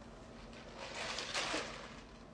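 Quiet room tone, with a faint soft hiss that swells briefly about a second in.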